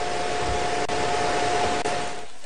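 Steady rushing background noise with a faint, thin steady hum running through it.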